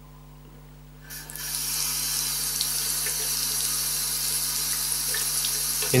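Chrome turn-type hot water pillar tap on a bathroom basin turned on: about a second in, running water starts with a rising hiss and then pours steadily into the basin.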